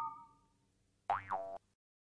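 Cartoon sound effects on a slide transition: the ringing tail of a struck chime fades out in the first half second, then about a second in comes a short springy 'boing' whose pitch dips and rises.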